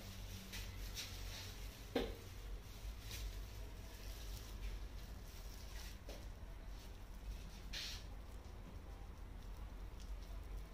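Faint soft dabs and wet strokes of a tint brush working straightening cream through hair, with light rustling of plastic gloves, over a low steady hum. One louder short sound about two seconds in.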